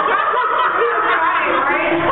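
People laughing and chattering over one another, with snickers and chuckles.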